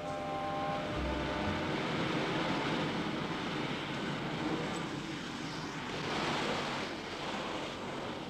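A canister vacuum cleaner running with a steady rushing noise, as a brass music phrase ends in the first second.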